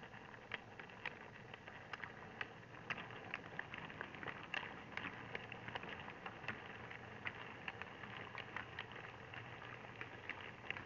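Model railway train running along the track, its wheels clicking irregularly over rail joints and pointwork above a low, steady motor hum, picked up by a camera riding on the train.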